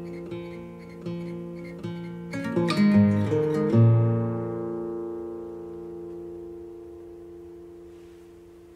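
Acoustic guitar ending a song: a few picked notes, then a quick run of strums up to a final chord about four seconds in, which is left to ring and fade away.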